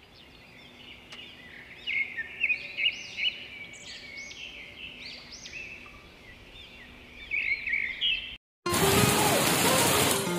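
Small birds singing, many short, arching chirps and trills in quick succession. Near the end, after a sudden cut, steady, dense hiss of heavy rain.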